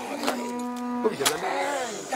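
Cattle mooing in a crowded pen: one held, even-pitched moo lasting about a second, then a second call that dips and rises in pitch. A short sharp knock comes just after the first moo ends.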